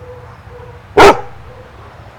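A dog gives a single loud, sharp bark about a second in.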